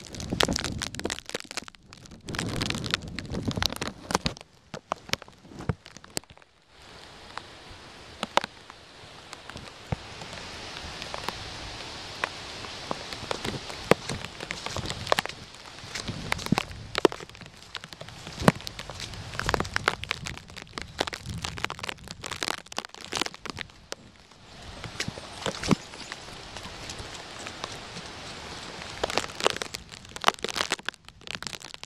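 Plastic bag wrapped over a camcorder crinkling and crackling against the microphone in wind and rain: many sharp, irregular crackles over a steady hiss.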